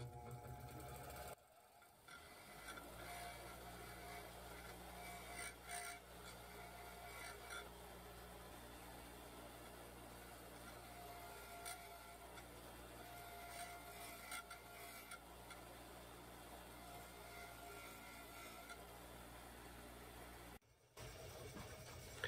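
Near silence: only a faint, steady low hum.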